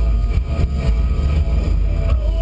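Subaru WRX rally car's engine running under load with a heavy drivetrain and road rumble, heard from inside the cabin.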